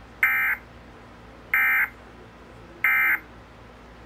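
Emergency Alert System end-of-message data bursts from a TV speaker: three short identical bursts of digital data tones, a little over a second apart, sent to close the required monthly test.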